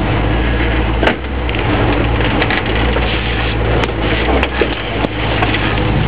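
Jeep Wagoneer's engine running low and steady as it crawls over rough ground, heard from inside the cab. A scattering of short, sharp cracks and knocks comes over it, the strongest about a second in.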